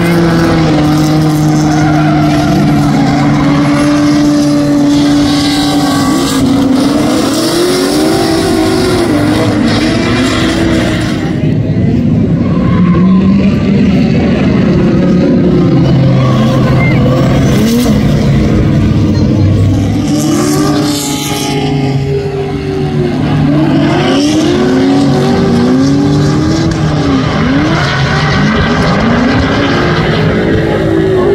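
Drift cars' engines revving hard, their pitch rising and falling over and over as the cars slide around the track, with tyre noise underneath.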